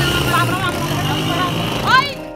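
A young woman's voice talking, ending in a loud call, over a steady background of outdoor noise.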